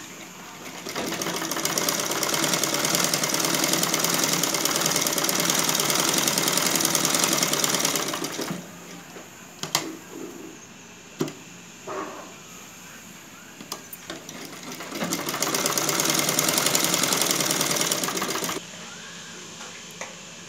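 Domestic sewing machine stitching through a blouse's neckline facing in two runs, each a steady fast rattle of the needle, with a pause between them holding a few sharp clicks and the handling of the fabric; the second run stops suddenly near the end.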